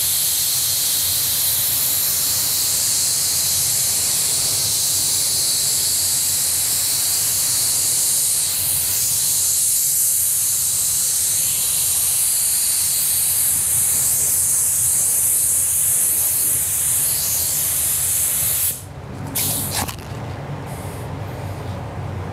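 Gravity-feed spray gun spraying candy blue paint, a steady, loud hiss of compressed air and atomised paint while a second coat goes onto a carbon spoiler. It stops near the end, with one short burst just after.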